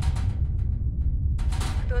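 Offshore oil-rig drill-floor machinery: a steady low rumble with a run of sharp knocks at the start and a louder burst of clattering knocks over a second in. A man's voice begins near the end.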